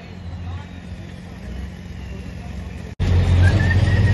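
Ford 8600 farm tractor's diesel engine running steadily at idle while hooked to the pulling sled. Just before the end there is a sudden cut to a louder, deeper engine rumble.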